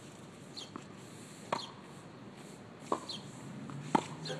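Three sharp knocks of a tennis ball on a hard court and racket: about a second and a half in, near three seconds, and just at the end, the last the loudest. A short high falling chirp repeats in the background about once a second.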